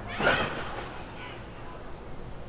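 A person's distant voice, a brief high cry that fades out within about a second.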